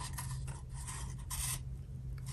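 Cardboard strip of a paper towel roll rubbing and scraping against a pencil as it is curled around it and pulled down: a few short rasps, the loudest about one and a half seconds in, over a faint steady low hum.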